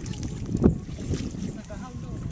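Wind buffeting the microphone with a steady low rumble, and one louder thump about two-thirds of a second in.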